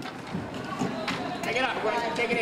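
Indistinct voices of spectators and players in an indoor roller hockey rink, with a few sharp clicks of sticks and puck on the rink floor.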